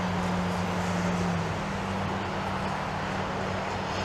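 A steady low engine hum over a noisy outdoor background. Its pitch steps up slightly about a second and a half in.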